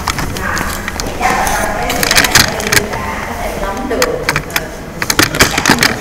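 People talking, with many short sharp clicks and rustles scattered throughout.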